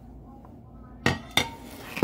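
Two sharp clacks about a third of a second apart, hard items knocking together as they are handled, with quiet room noise before them.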